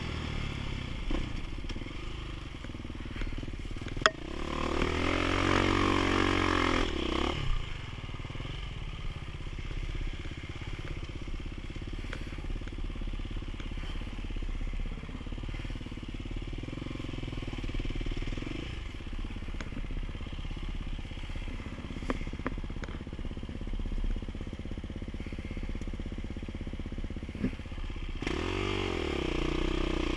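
Off-road dirt bike engine running along a trail in low gears, revving up hard about four seconds in and again near the end. There is a sharp knock just before the first rev.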